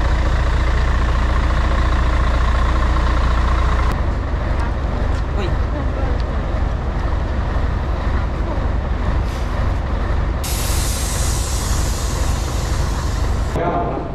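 A large coach's diesel engine idling steadily, loudest in the first four seconds. About ten seconds in, a loud hiss of air starts and cuts off about three seconds later.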